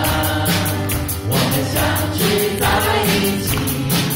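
Live worship band performing a Chinese praise song: several vocalists singing together over electric guitar and a drum kit, with the cymbals keeping a steady beat.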